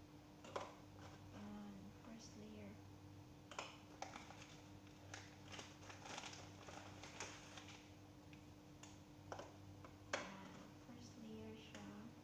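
Graham crackers being laid by hand into a plastic food container: scattered light clicks and taps, over a steady low hum.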